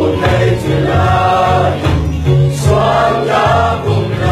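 A mixed group of young men and women singing a Chin (Lai) gospel praise song together, over sustained low notes that change pitch in steps.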